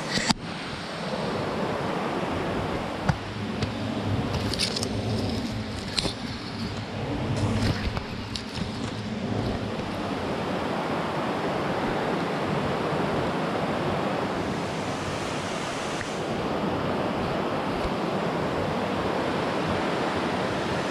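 A steady rushing noise throughout, with rustling and a few knocks and low thuds between about three and nine seconds in as the camera is carried through undergrowth.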